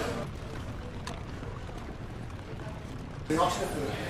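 Soundscape of water sounds from a rowboat on a canal, as oars dipping and splashing, under a faint background of voices. About three seconds in, it gives way suddenly to louder people chattering.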